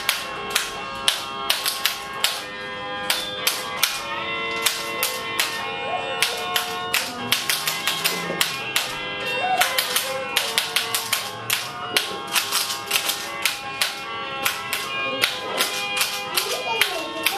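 Homemade soroban (abacus) instrument played as a rhythm instrument: its beads give sharp clicks about three or four times a second. The clicks sound over steady, sustained musical notes in an instrumental passage.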